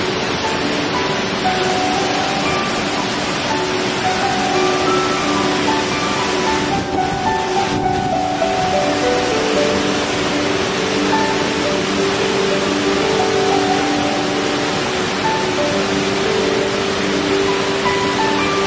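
Slow, soft instrumental melody with a run of falling notes near the middle, laid over a steady rush of flowing water.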